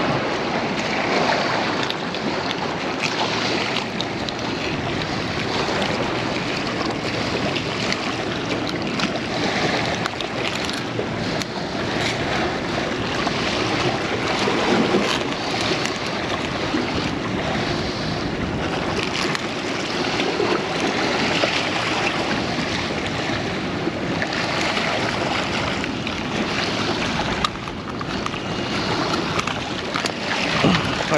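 Steady wind buffeting the microphone, with sea surf washing against the rocks of a jetty.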